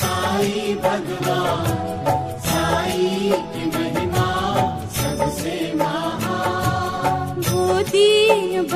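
Devotional background music: a sung mantra-style chant with instrumental backing and a regular beat.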